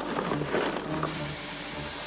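Cartoon sound effects of a truck driving, with an even hiss, over background music.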